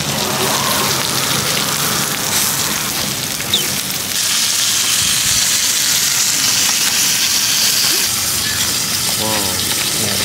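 Tacos frying on a flat-top griddle: a steady sizzling hiss that grows louder about four seconds in.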